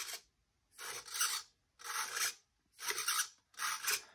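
Small hobby servo whirring in short bursts, about one a second, as it swings a toy car's front-wheel steering from side to side.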